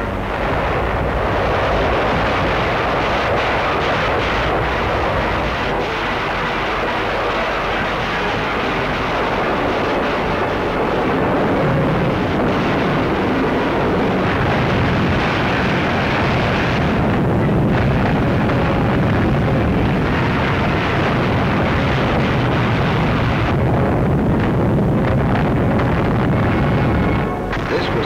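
Documentary soundtrack of music mixed with a dense, steady din of battle sound effects, gunfire and explosions.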